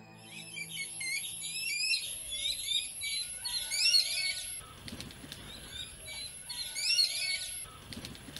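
A flock of jungle babblers chattering: a dense run of short, squeaky, rising calls that breaks off about halfway through and starts again for another second or two.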